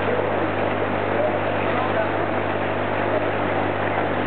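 Steady mechanical hum of koi pond equipment, a constant low mains-type drone with a wash of rushing-water noise over it, with faint indistinct voices underneath.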